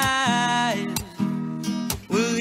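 A man singing to his own acoustic guitar: he holds one sung note that slides down in pitch and fades in the first half over a strummed chord, then the guitar strums on with sharp strokes about a second in and again near the end.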